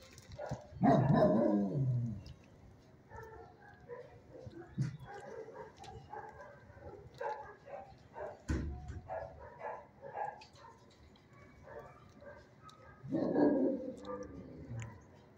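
Dogs barking in a shelter kennel: one loud, pitched bark about a second in and another near the end, with fainter barks in between and a single knock about two-thirds of the way through.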